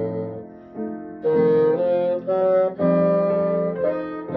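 Bassoon playing a slow solo melody. A low held note fades out, then after a short pause a phrase of separate notes starts about a second in, ending on a longer held note.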